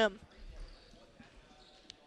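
A basketball bouncing faintly on a hardwood gym floor, against quiet gym background noise, with a small sharp tick near the end.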